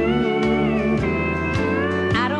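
Pedal steel guitar playing a fill in a country song, its notes sliding up and down in pitch over bass and drums.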